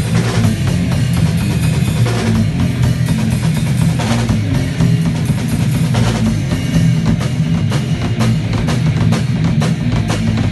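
A rock band playing live: a drum kit with bass drum and cymbal strikes, an Ibanez electric guitar and a bass guitar, all loud and continuous.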